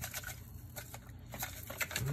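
Plastic spice shaker being shaken over a raw turkey: a quick run of light clicks and taps that thins out about halfway through and picks up again near the end, over a faint low hum.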